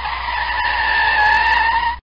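Car tyre squealing in a burnout: one steady, high squeal over a low rumble, starting and stopping abruptly, its pitch sagging a little near the end.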